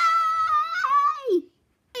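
A child's high-pitched, drawn-out cheer of "yay!", held for about a second and a half, ending with a drop in pitch and then cut off into dead silence.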